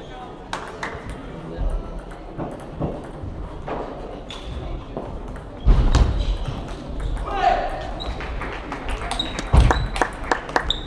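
Table tennis ball clicking off bats and table in a rally, with a few heavy thuds that are the loudest sounds, over the steady hubbub of voices and other matches in a large sports hall.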